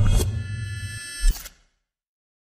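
Dramatic film soundtrack music with sustained tones, a sharp hit just after the start and a heavier low hit about a second and a quarter in, then the sound cuts off suddenly into silence.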